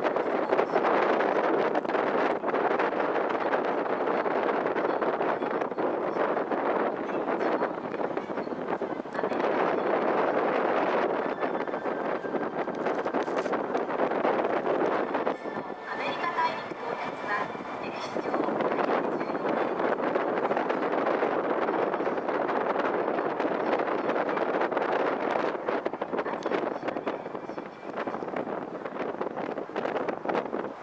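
Steady wind rushing over the microphone on the open deck of a moving harbour cruise boat, mixed with the boat's running and water noise. The level dips briefly about halfway through.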